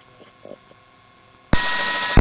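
Police two-way radio keying up between transmissions: a sudden loud burst of static with a steady beep-like tone in it, starting about one and a half seconds in, after a faint stretch.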